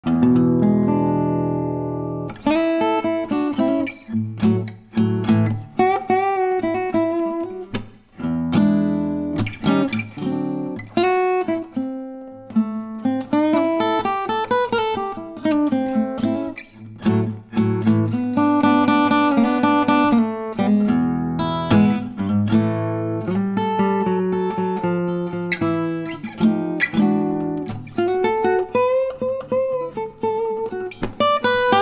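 Solo acoustic guitar playing an acoustic blues in the key of A over a one-five-four chord progression, low bass notes ringing under single-note melody lines.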